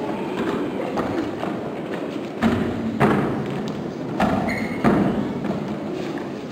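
Children's feet thudding on the wooden stage risers, with three louder thumps about two and a half, three and five seconds in, over a continuous background hubbub.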